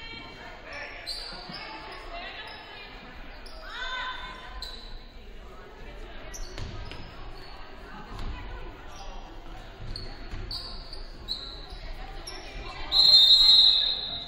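Basketball game sounds in a large echoing gym: sneakers squeaking on the hardwood floor, ball bounces and players' voices. About a second before the end, a referee's whistle blows once, loud and shrill, stopping play for a foul call.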